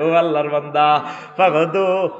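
A man's voice intoning in the drawn-out, sing-song chant of a Bengali waz sermon. He holds each syllable at a steady pitch, in two long phrases with a short break in between.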